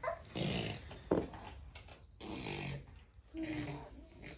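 Low, indistinct voice sounds in a small room, with a sharp click about a second in.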